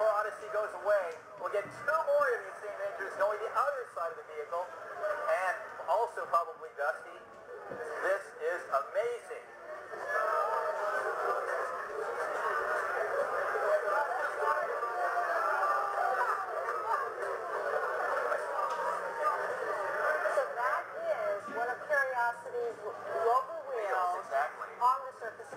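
A crowd of people cheering and talking over one another, heard thin and tinny through a television's speaker. Separate voices at first, then about ten seconds in it thickens into a dense, steady crowd noise that thins out again near the end.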